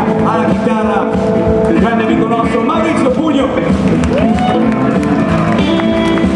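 Live electric blues band playing, with electric guitars and a drum kit, and a man's voice over the music at the start.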